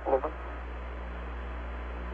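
Steady hum and hiss of an open air-to-ground radio channel with no one talking, cut off in the treble like a radio link. It follows the tail of one spoken word at the very start.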